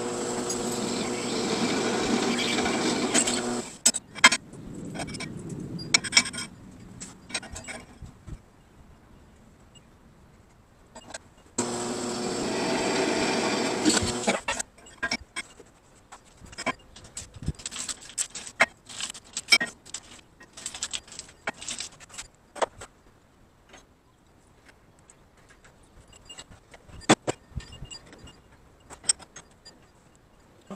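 Benchtop drill press running twice, about three seconds each time, drilling holes through a round steel plate. In between and after come many short metallic clicks and clinks as the plate and locking pliers are handled.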